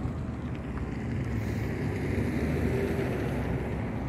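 Wind buffeting a phone microphone outdoors: a steady, low rumbling rush.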